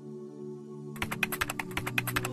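Soft sustained background music, joined about a second in by a quick run of computer-keyboard typing clicks: a typing sound effect for text being typed out on screen.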